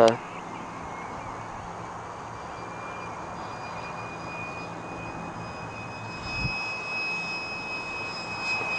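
Electric ducted-fan RC jet (Tamjets TJ80SE fan on a Neu 1509 motor) flying high overhead: a faint, thin high-pitched whine over a steady hiss, growing louder and rising slightly in pitch from about three seconds in as the jet comes closer. A brief low thump about six and a half seconds in.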